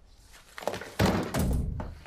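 A door pushed shut with a heavy thunk about a second in, after a few light clicks.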